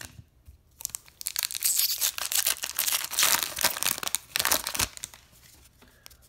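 A trading card pack's wrapper being torn open and crinkled by hand: a dense crackling that starts about a second in and dies away near the end.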